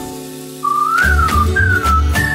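A cartoon sound-effect whistle, a single clear tone sliding up and then down in two short phrases, starting about half a second in over two soft low thumps. The rush of noise at the very start dies away before it.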